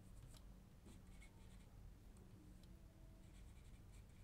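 Faint strokes of a marker pen on a whiteboard as a word is written: a few brief, soft scratches over quiet room tone.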